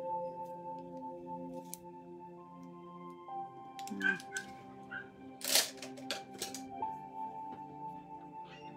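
Soft ambient background music of long, held tones that change every few seconds, with a few sharp clicks and a short rustle about five and a half seconds in.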